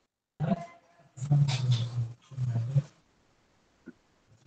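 A man's voice coming through a video call, garbled and breaking up in three short stretches so no words can be made out, the sign of a poor connection.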